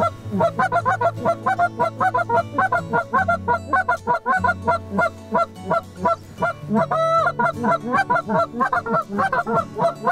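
Canada geese honking, a dense, rapid run of calls several a second from a flock coming in over decoys, with one longer drawn-out call about seven seconds in.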